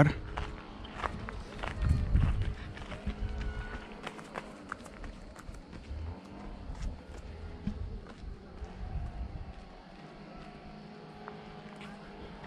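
Footsteps on a dirt path with handling noise from a carried camera: irregular clicks and scuffs over a low rumble that is loudest about two seconds in and then dies down.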